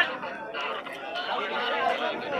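A crowd of men chattering, several voices talking over one another.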